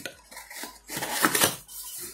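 Cardboard packaging of a smartphone box being handled: the inner cardboard insert is lifted out, with a few short scrapes and taps of card and paper.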